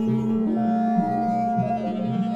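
Electronic music: synthesized pulses tuned as one equal-tempered chord, repeating at Fibonacci-related tempos and phasing against each other over held tones. A low pulse repeats about twice a second under a steady mid-pitched tone.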